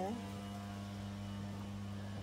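A steady low hum holding one pitch and level throughout, with no other event.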